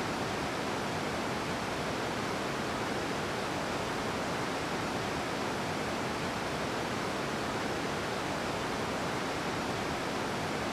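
Waterfall rushing: a steady, unchanging roar of falling water.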